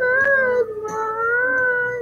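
A singer's voice holding one long high note, wavering slightly, then sliding down in pitch as it ends.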